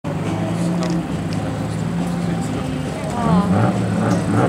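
Drag-race cars idling at the start line: a steady, low engine tone. A voice comes in about three seconds in.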